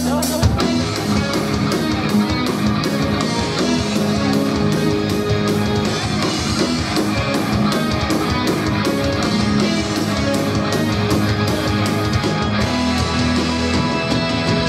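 A live band playing a song: electric guitars, bass and a drum kit. A held low chord gives way, about half a second in, to the full band with a fast, steady drum beat.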